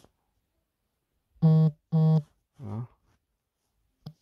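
Two short, steady buzzing beeps about half a second apart, followed by a briefer, lower sound that wavers in pitch.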